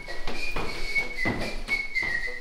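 A person whistling a tune in short, high, held notes that step up and down in pitch, with a few dull thuds.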